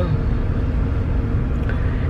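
Steady low rumble of a car's idling engine heard from inside the cabin, with a faint steady hum over it.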